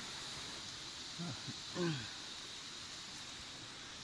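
Two short wordless vocal sounds from a man, falling in pitch, about a second and two seconds in, over a steady faint hiss.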